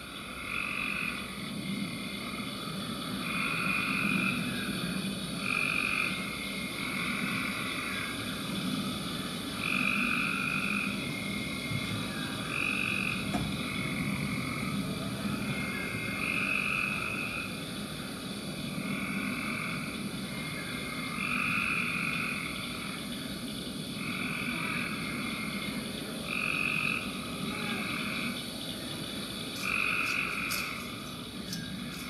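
Frog chorus: croaking calls about a second long, repeating irregularly every second or two, over a steady background hiss.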